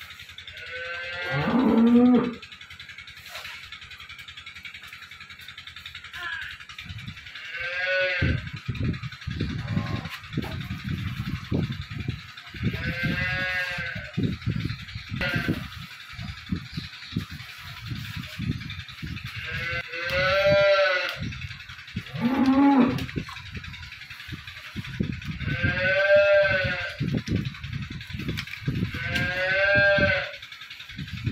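Cattle mooing: about seven drawn-out calls spaced a few seconds apart, each rising and falling in pitch, the first and another past the middle sliding down low. Low knocks and bumps run between the calls.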